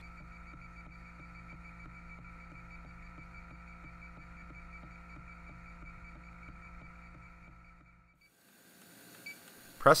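A small sampling pump inside a refrigerant leak detector runs with a steady hum and a fine, even pulsing, drawing air in through the probe. The sound fades out about eight seconds in.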